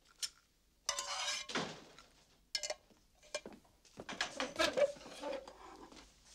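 A spatula scrapes fried eggs from a frying pan onto china plates: a scrape about a second in, then scattered clinks and knocks of pan and plates, busiest around four to five seconds in.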